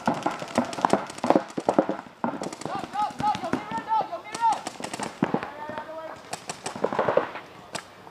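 Paintball markers firing strings of rapid sharp pops through the whole stretch, mixed with players shouting.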